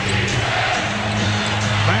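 Basketball being dribbled on a hardwood court over the steady noise of an arena crowd, with a steady low drone beneath.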